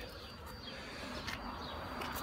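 Faint outdoor background noise: a low rumble with a few faint high chirps and a light click or two.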